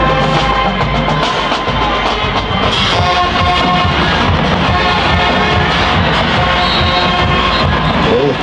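Music with a drum beat, playing steadily throughout.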